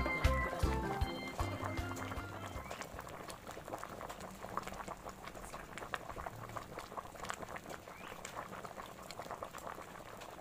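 Music fades out over the first couple of seconds, leaving a faint, steady crackle of food frying in hot oil, with many small irregular pops.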